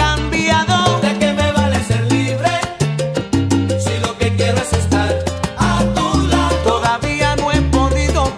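Salsa romántica music in an instrumental passage without singing: a moving bass line under a dense pattern of instrument notes, with steady percussion strokes.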